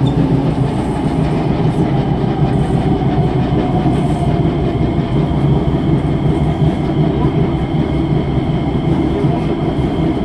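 Kawasaki/Sifang C151A metro train running at speed, heard from inside the car: a steady loud rumble of wheels on rail with a rhythmic clack from its severely flat-spotted wheels.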